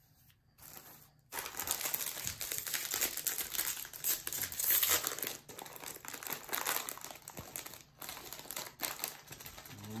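Crinkling of a Lego minifigure blind-bag packet being squeezed in the hands and opened. It starts about a second in and goes on in continuous rustling crackles, with short pauses.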